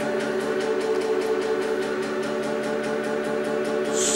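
A CD player stuck skipping on a German pop song, looping a tiny fragment over and over into a steady drone with a rapid, even pulse.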